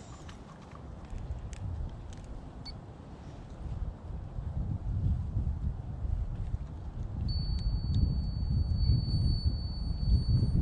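Low, gusting wind rumble on the microphone, growing louder in the second half, with a few faint handling clicks early on. About seven seconds in, a handheld pin moisture meter pressed into a split of cherry firewood starts a steady high-pitched beep as it takes a reading.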